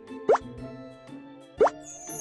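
Two short cartoon pop sound effects about a second and a half apart, each a quick upward-sliding blip, over soft background music. They mark new vampire fangs popping into place.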